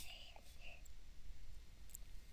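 Faint room tone with a steady low hum in a pause between spoken sentences, with a soft breath or mouth noise in the first half and a faint click near the end.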